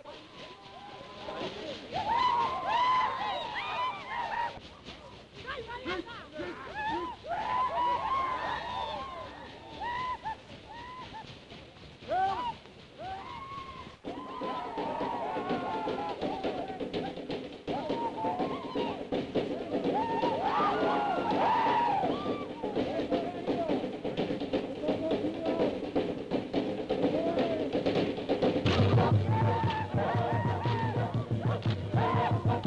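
Tongan dance music: a group of voices chanting and calling in rising-and-falling shouts over drumming. From about halfway the voices hold steady notes, and a deep drumbeat comes in strongly near the end.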